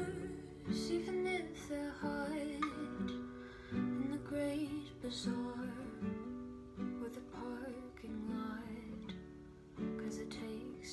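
Acoustic guitar strummed in a slow song, a chord struck about once a second with the notes ringing between strokes.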